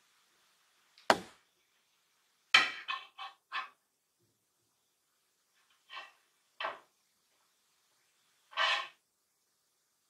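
Metal hoop frame of a 3D dreamcatcher knocking and clicking as it is handled and turned: one sharp click about a second in, a quick run of four knocks near three seconds, two lighter knocks about six seconds in, and a slightly longer sound near the end.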